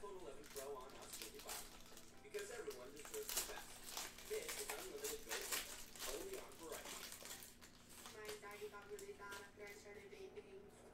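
Foil wrapper of a trading-card hobby pack crinkling and tearing in a run of short crackles as it is pulled open by hand. A voice sits faintly underneath.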